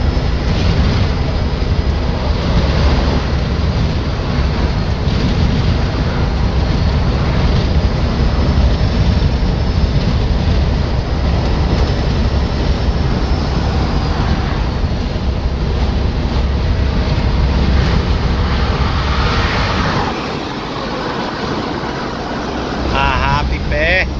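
Steady road and wind noise of a vehicle moving at highway speed, heard from inside the cab with wind buffeting the microphone. The low rumble drops off briefly about twenty seconds in, then comes back.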